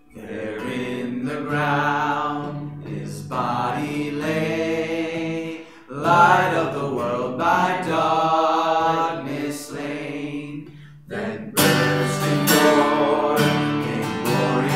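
A man singing a hymn while accompanying himself on a strummed acoustic guitar. The strumming grows louder and sharper about two thirds of the way through.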